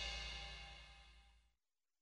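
The final chord of a rock band's song, with cymbals, ringing out and dying away steadily. It fades into silence about a second and a half in.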